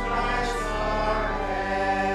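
Congregation singing a hymn with pipe organ accompaniment, in sustained, held chords.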